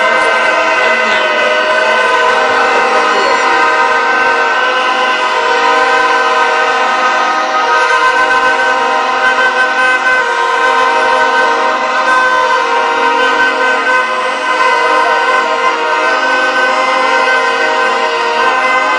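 A loud, unbroken drone of several horn-like tones sounding together at different pitches, held steady throughout.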